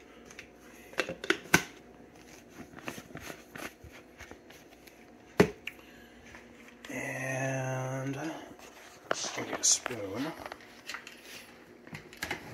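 Plastic containers, lids and a scoop being handled on a kitchen counter: scattered small clicks and knocks, with one sharp knock about five seconds in. Past the middle comes a steady pitched hum lasting about a second and a half that rises in pitch just before it stops.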